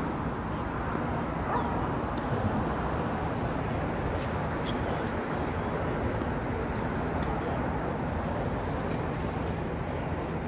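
Steady traffic rumble from an elevated highway overhead, with several sharp pops of tennis rackets striking the ball every second or two during a baseline rally.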